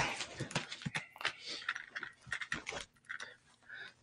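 Faint, irregular clicks, knocks and rustles of a person settling back at a desk and handling a hardcover book.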